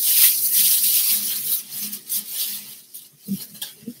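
Rustling of a bag and clothes being handled and pulled about, loudest at the start and thinning out, with a soft thump near the end.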